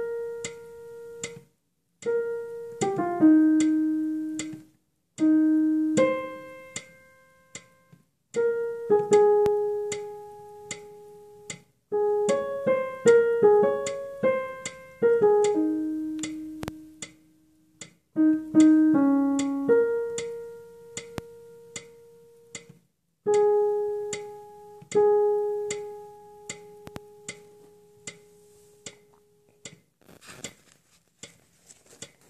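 Piano playing the alto line of a choral piece one note at a time, in short phrases of struck, decaying notes and longer held notes with brief pauses between phrases. A steady ticking click keeps the beat underneath.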